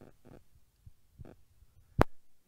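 A pause with a few faint, soft low thumps, then one sharp, loud click right at the end.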